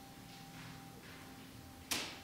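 Quiet room tone with a faint steady hum, then a single sharp knock near the end that dies away quickly with a short echo.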